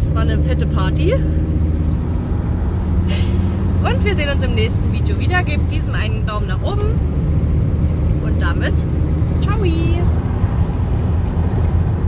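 Steady low drone of a van's engine and tyres on the road, heard inside the cab while driving, with a woman talking at intervals over it.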